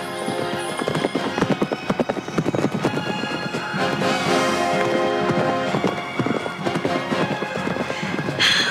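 A horse's galloping hoofbeats as a cartoon sound effect, played over background music with held notes.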